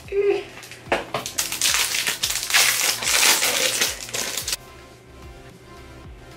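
Plastic shrink-wrap and a cardboard box being torn and crinkled by hand as a makeup palette is unwrapped, in irregular bursts that stop suddenly about four and a half seconds in. Quiet background music plays underneath.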